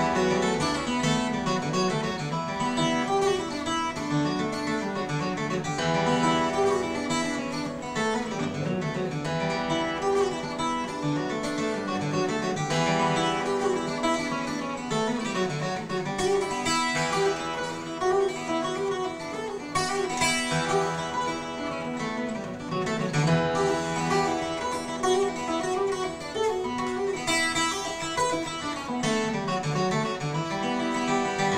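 Solo twelve-string acoustic guitar, flatpicked, playing a steady stream of quick notes in an Irish tune.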